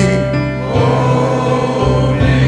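Slow gospel music: sustained, held chords over a steady low bass note, between sung lines.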